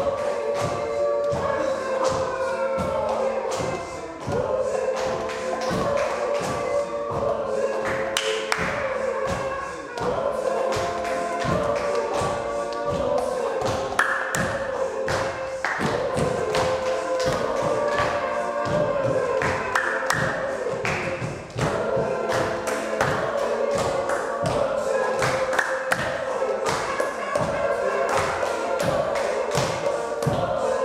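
A group doing body percussion: hand claps and low thumps in a steady rhythm under several voices singing a melody together. The sound briefly drops a few times.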